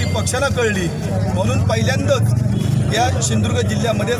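A man speaking into a cluster of microphones, over a steady low rumble of outdoor background noise.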